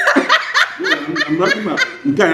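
Women laughing together in quick, repeated bursts.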